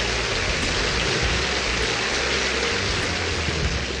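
Audience applauding steadily, an even wash of clapping.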